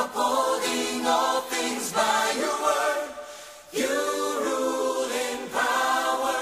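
A choir singing held chords in a worship-song backing track. The phrases restart about every two seconds, with a short lull just past the middle.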